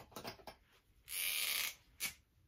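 A dry-erase marker drawn across a whiteboard in one stroke lasting under a second, about a second in, after a few light handling clicks.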